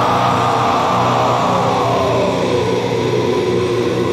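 A transition effect in a metalcore song: a loud, noisy wash that sweeps slowly down in pitch over a sustained low drone, with no drums or vocals.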